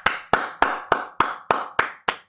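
One person clapping his hands in a steady rhythm, about three and a half claps a second, seven claps in all.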